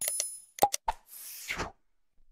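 Subscribe-animation sound effects: a short ringing chime, three quick clicks, then a whoosh that cuts off sharply.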